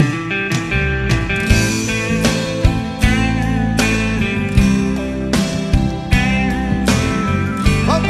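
Live band playing the instrumental intro of a gospel song, coming in suddenly at full volume with guitars over a steady beat of drum hits.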